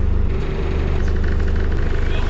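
Box truck's engine idling steadily, a loud low hum heard from inside its cargo box.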